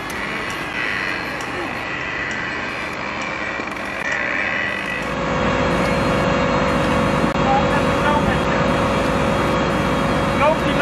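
A steady noisy background, then from about halfway a motor running steadily with a constant hum: the fire service's pump engine pumping floodwater out of the low-lying houses.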